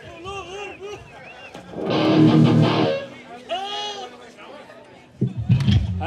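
Electric guitar strummed once through an amp between songs: one loud chord about two seconds in that rings for about a second, with a lower note held briefly after it. Voices and crowd chatter sit underneath.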